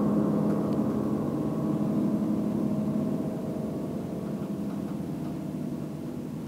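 Violin and grand piano holding a final chord that rings out and slowly fades away.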